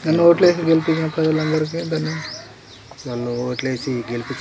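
A man talking into a microphone, with a pause a little past the middle, while small birds chirp in the background.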